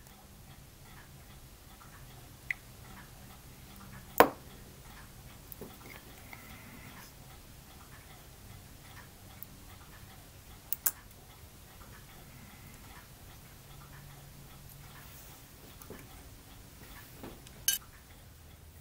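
Sharp, isolated clicks of a flat hobby blade being pressed through the attachment points of a photo-etched metal fret to free a small part. The loudest click comes about four seconds in, a quick double click near the middle, and another near the end, over a faint, quiet room background.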